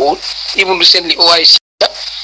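A man talking continuously, his words cut by a sudden brief dropout to dead silence about three-quarters of a second before the end.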